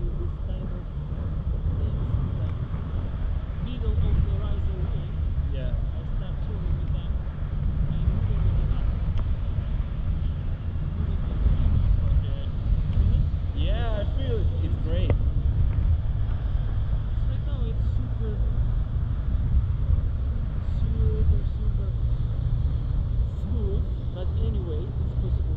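Wind rushing over the camera microphone in flight under a tandem paraglider: a steady, heavy low rumble.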